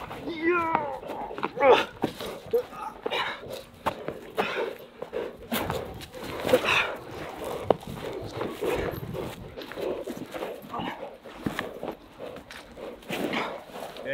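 German Shepherd struggling with a helper over a padded bite sleeve on grass: scuffling and knocks, with short bursts of voice from the man and the dog.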